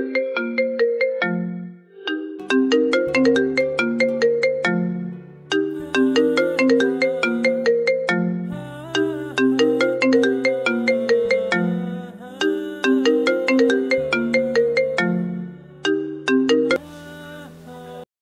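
Smartphone ringing with a melodic ringtone: a quick run of short notes over low held notes, the tune looping over and over. It stops suddenly as the call is answered.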